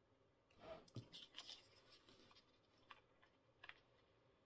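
Faint rustling and light clicks of a paper tag being handled and pressed down onto card: a short cluster of rustles about half a second in, then two small ticks near the end.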